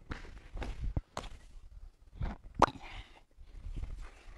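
Bare feet scuffing and bodies thudding on judo mats as a partner is taken down with a back step and slice. There are several soft knocks and one sharp slap about two and a half seconds in.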